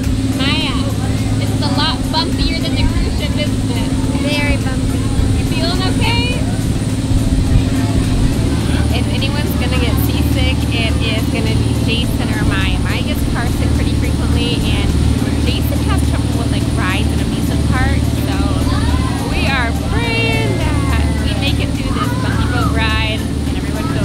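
Small excursion boat's engine running with a steady low drone, with high-pitched voices calling out over it again and again.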